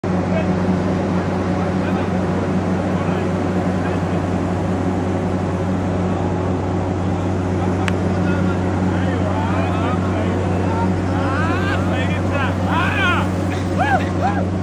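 Borehole drilling rig running steadily with a deep, even hum. From about nine seconds in, people begin cheering and calling out in rising-and-falling cries, growing louder toward the end, as the borehole strikes water.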